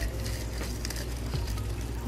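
Crackly rustling of artificial Christmas tree branches being handled close to the microphone, a steady run of small crackles.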